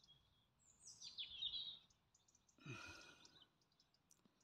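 Quiet outdoor ambience with a faint bird call: a short, jagged phrase falling in pitch about a second in. A brief soft sound follows near three seconds.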